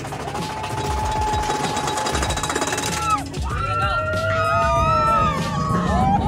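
Big Thunder Mountain Railroad roller coaster train clattering along the track with a low, rattling rumble. A single steady high note is held for nearly three seconds, then several riders scream from about halfway through.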